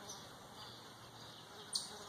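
Quiet outdoor summer ambience: a faint steady high buzz of insects with faint birds, and a short hiss near the end.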